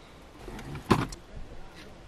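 A metal spoon scooping avocado flesh out of the skin, with one sharp click about a second in over a faint low rumble.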